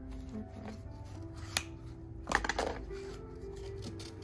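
Background music with steady tones, over handling noise as an Oculus VR headset and its plastic-wrapped packaging are lifted out of a cardboard box. There is a sharp click about one and a half seconds in, then a louder burst of rustling a little past halfway.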